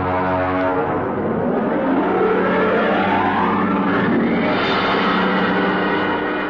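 Loud sustained radio-drama theme music, with steady low notes underneath and a rising swooping glide climbing over it from about a second in until past halfway.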